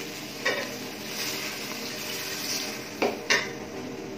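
Flat metal spatula stirring beef masala in a metal pot, over a steady sizzle of frying, with a few sharp clinks of spatula on pot: one about half a second in and two close together around the three-second mark.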